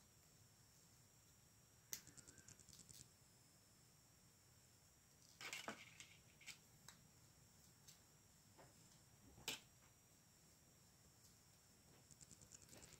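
Faint clicks and taps of small hard plastic toy parts as an accessory is worked onto an action figure's arm: a quick run of small clicks about two seconds in, a louder click a little past the middle, and a sharp single click near the end, over near silence.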